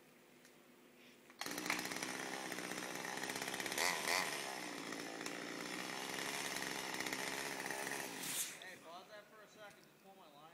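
Chainsaw up in the tree cutting into a limb. It comes in suddenly at full speed about a second and a half in, runs steadily for about seven seconds, then cuts off.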